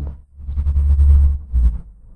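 A breathy rush of noise close to the microphone, with a heavy low rumble, about a second long, followed by a short voiced puff; a speaker's exhale hitting the mic.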